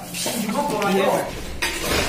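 A metal fork clinking and scraping on a plate, with voices talking over it.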